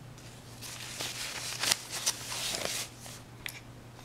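Thin painting paper being picked up and slid across other sheets on a table, rustling for about two seconds with a few sharp crackles.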